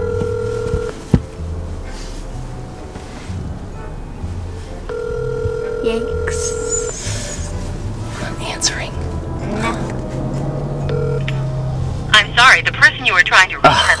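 North American ringback tone through a phone's loudspeaker: a steady ring lasting about two seconds, repeating about every six seconds while the call goes unanswered. A short tone follows about eleven seconds in, then a recorded voicemail voice starts near the end, saying the mailbox has not been set up.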